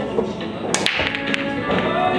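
A pool break: the cue tip strikes the cue ball, which smashes into the racked balls in a quick cluster of sharp clacks a little under a second in, then a lone ball-on-ball click about half a second later. Background music with singing plays throughout.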